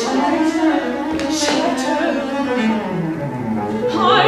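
Cello playing a slow, wandering melodic line with other instruments of a small chamber orchestra, in an instrumental stretch between sung phrases.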